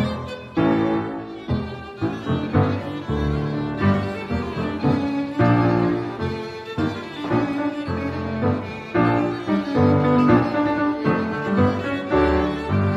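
Violin and piano playing a classical piece together: a bowed violin melody of held notes over piano accompaniment.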